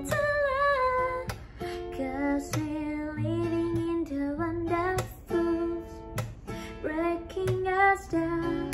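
A woman singing held, gliding notes over her own strummed acoustic guitar, with a strum roughly every half second to second.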